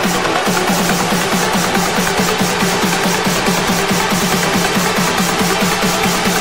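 Electronic dance music from a trance DJ mix: a rolling bass line pulsing several times a second under a steady beat with regular hi-hats.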